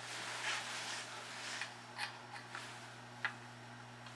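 Faint handling sounds: a few soft clicks and rustles as a soldering iron tip is moved toward a metal guitar tremolo claw, the sharpest click near the end, over a steady low hum.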